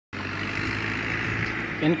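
Steady outdoor background noise with a low hum underneath; a man's voice begins near the end.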